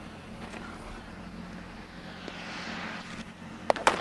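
A baseball bat striking a pitched ball near the end: two sharp cracks in quick succession, over a faint steady low hum.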